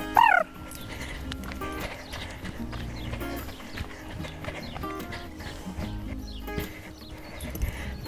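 A grey horse trotting in hand on a sand arena, its hoofbeats faint, alongside a handler's running footsteps. A short call is heard right at the start, and steady background music plays underneath.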